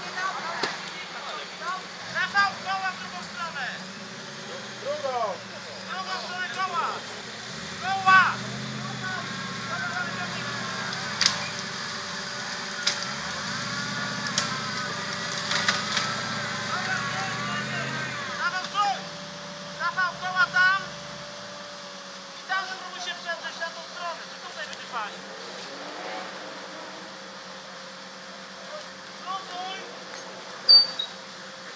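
Off-road vehicle winch pulling under load: a steady whine over a low rumble that starts about five seconds in and stops about two-thirds of the way through, with men shouting.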